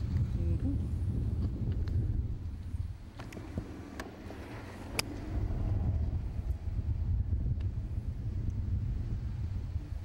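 Wind buffeting the microphone in a steady low rumble. A faint sharp click comes about four seconds in and a louder one a second later, typical of a golf club striking a ball on the range.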